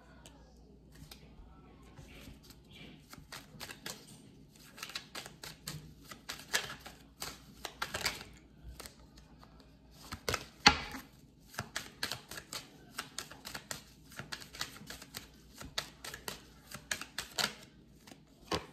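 A deck of tarot cards being shuffled by hand: a long run of irregular quick card clicks and slaps, starting about two seconds in, with one louder slap a little past halfway.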